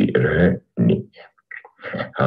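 Recording of a man speaking Tuscarora, an Iroquoian language, in short phrases broken by brief pauses, full of glottal stops.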